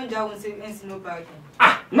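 A man's voice with no clear words: a drawn-out vocal sound falling slightly in pitch, then a short, loud exclamation near the end.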